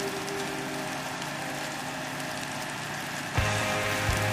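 A steady, even hiss, typical of wind on the microphone, then a little over three seconds in, music with a low, steady bass note starts suddenly.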